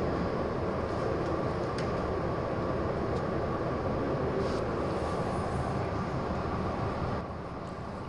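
Steady background noise, an even hiss and rumble with a faint constant hum, easing off slightly near the end.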